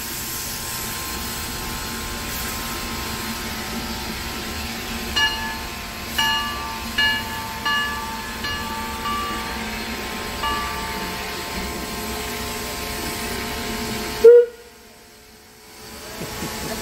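Steam locomotive Santa Cruz Portland Cement No. 2 sounding a run of about seven short whistle toots over a steady hiss. Near the end comes one sharp loud blip, after which the sound nearly drops out.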